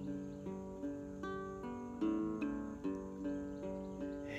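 Acoustic guitar played solo, a steady picked-and-strummed chord pattern with new notes struck two or three times a second.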